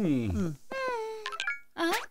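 A cartoon character's voice moaning, sliding steeply down in pitch, followed by a longer wail that sinks slowly.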